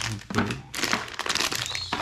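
Paper and plastic packaging crinkling as it is handled, with a thunk from the cardboard box about a third of a second in.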